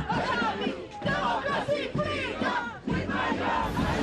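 A large outdoor crowd of demonstrators shouting together, many voices overlapping, with brief dips about a second in and just before three seconds.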